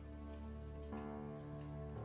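Soft background music score: sustained chords that shift to a new chord about a second in.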